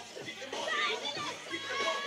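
Crowd of spectators making a mix of overlapping voices, with scattered shouts and chatter and no single clear speaker.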